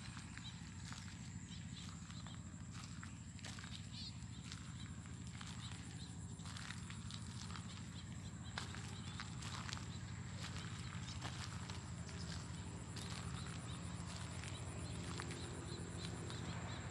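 Quiet outdoor ambience with scattered soft footsteps and rustles in grass and loose soil, over a low steady rumble and a thin steady high-pitched tone.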